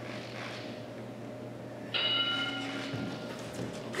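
A workout interval timer's bell chime rings once about two seconds in: several clear steady tones that fade away over about a second and a half, signalling the end of the timed set. Before it there is only room tone with a low hum.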